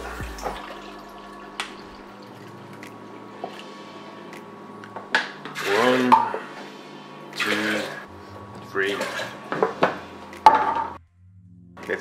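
Water poured from a plastic bottle into a plastic measuring cup and tipped into a glass blender jar over nuts, in several short splashing pours with light knocks of the cup against the jar.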